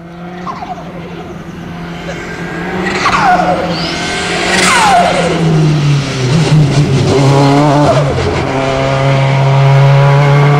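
Ford Focus BTCC touring car's racing engine working through corners. The pitch drops sharply several times in the first half as it slows, then climbs again as it accelerates, growing louder as it comes nearer.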